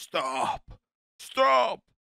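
A voice saying "stop" twice, about a second apart, each word falling in pitch at its end.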